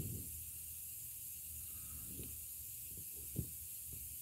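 Faint steady hiss, with a few soft knocks of hand contact with the camera, the clearest about three and a half seconds in.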